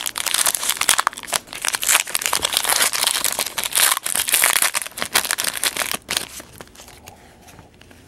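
A foil trading-card pack wrapper being torn open and crinkled by hand, a dense crackling that dies down to a faint rustle after about six seconds.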